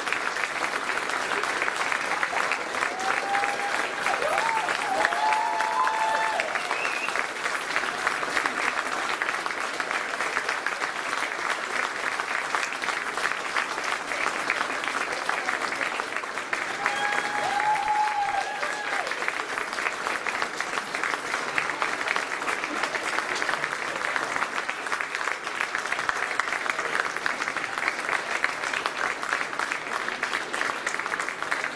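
Audience applauding, a sustained and even round of clapping that holds at the same level throughout.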